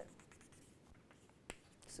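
Faint taps of chalk on a chalkboard while a dashed line is drawn, with one sharper click about one and a half seconds in.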